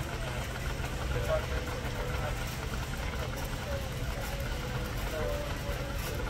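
Steady low hum of a large store's background noise, with faint voices coming and going over it.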